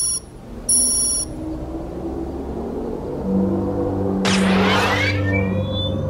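Sound effects of a missile launch system being readied. A pair of short electronic beeps near the start, then a low steady hum builds. About four seconds in comes a whoosh, followed by short rising electronic chirps.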